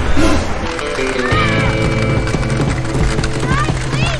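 Background music, its bass and held notes coming in about a second in, with brief high sweeping voices over it.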